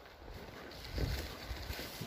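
Footsteps pushing through forest undergrowth: plants rustling, with a few dull thuds from about a second in.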